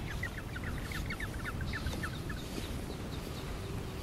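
Small birds chattering in a rapid run of short, high chirps, several a second, that stop a little past halfway, over a steady low rumble.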